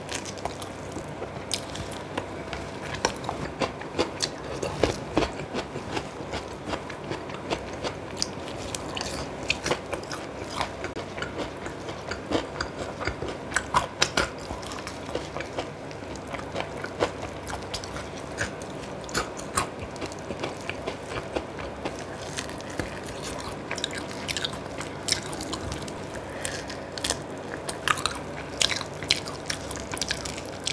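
A person biting and chewing spicy sauce-coated fried chicken, with many short clicks and crunches of eating throughout.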